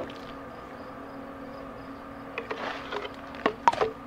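Steady low hum of a small electric on-demand rain barrel pump running. About two and a half seconds in come a few sharp clicks and knocks as the garden hose is pulled out of a plastic watering can.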